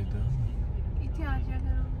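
Car interior noise while driving slowly: a steady low engine and road rumble, with a person's voice briefly over it twice.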